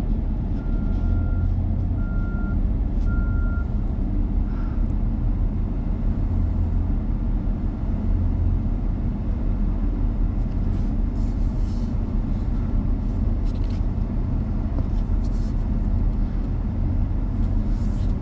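Steady low engine rumble heard from inside a vehicle cab. Three short, evenly spaced beeps of a reversing alarm sound in the first few seconds.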